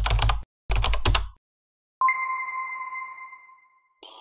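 Keyboard-typing sound effect: two quick runs of key clicks with a low thud under them. Then a single bell-like chime rings out and fades over about two seconds.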